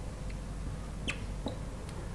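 Steady low room hum with three faint, short squeaks: one about a second in, one halfway through and one near the end.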